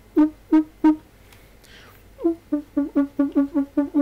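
Beatbox trumpet: a mouth-made imitation of a trumpet, produced from a whistle lip position with the air pushed out through the cheek. It plays short trumpet-like notes, four separate blasts in the first second, then after a pause a fast run of about six notes a second.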